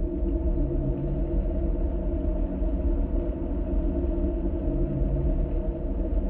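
A steady low rumble with several held humming tones above it, unbroken.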